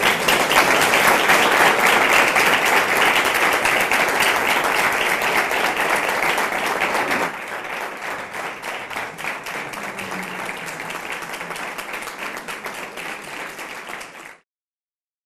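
Audience applauding, a dense patter of many hands clapping. It is loudest for the first seven seconds, then drops to lighter clapping for the rest.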